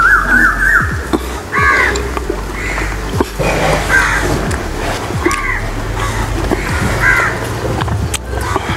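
Crows cawing, about five short caws spaced a second or so apart, over a low steady background hum.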